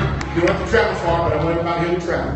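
Church congregation voices calling out praise together, with music playing underneath.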